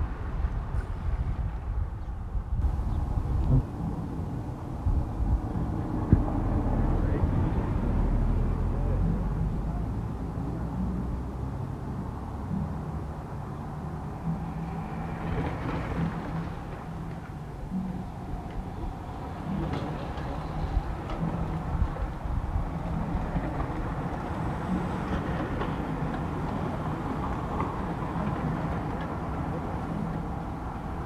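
Road-racing bicycles of a peloton going by on brick pavers, a rush of tyres and freewheels, with a low rumble of wind on the microphone. One rider passes close about halfway through.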